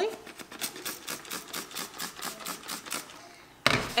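Spray bottle misting 91 percent rubbing alcohol over the top of a fresh cold-process soap loaf in quick repeated spritzes, about three or four a second, stopping about three seconds in; the alcohol spritz is the final step to keep soda ash from forming.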